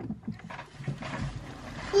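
Handling noise from the recording camera being moved: a low rustling rumble with a few soft bumps.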